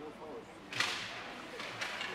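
Hockey sticks and skate blades on the ice at a faceoff: two sharp slapping scrapes about a second apart, the first the louder, over faint rink chatter.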